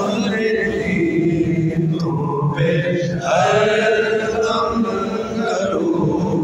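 A man's voice chanting a devotional salam (salutation to the Prophet) in long, held melodic lines, the congregation standing for it after Friday prayer.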